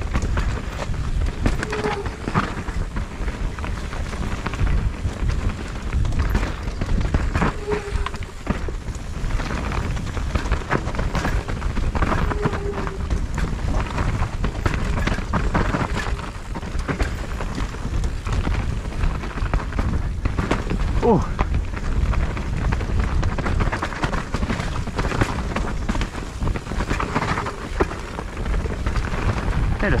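Mountain bike riding fast down a rough dirt trail: continuous wind rumble on the camera microphone, with frequent knocks and rattles from the bike going over roots and rocks.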